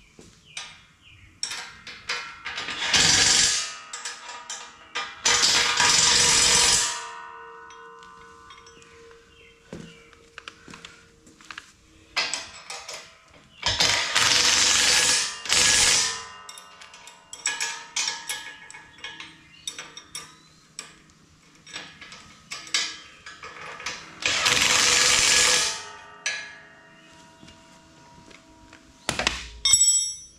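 Cordless impact driver running bolts down into a steel fork frame in about five bursts of one to two seconds each. Between the bursts come metal clinks and ringing from bolts and steel being handled.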